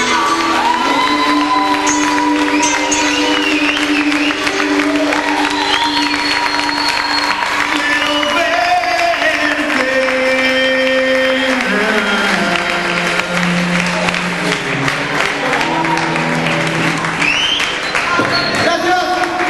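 Live rock band with singer, electric guitar, bass, keyboards and drums playing the closing bars of a song: long held chords that step down about two thirds of the way through, over steady cymbal wash, with crowd applause and cheering mixed in.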